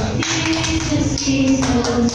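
A group of women singing together while clapping their hands and tapping plastic cups on the floor in a cup-rhythm routine.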